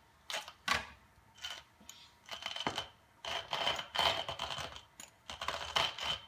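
Stainless steel manual coffee grinder being hand-cranked, crunching through coffee beans in irregular bursts with short gaps between them.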